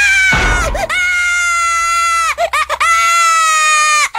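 A cartoon child's voice screaming in long, high-pitched wails, each held for over a second. A dull thump comes about half a second in.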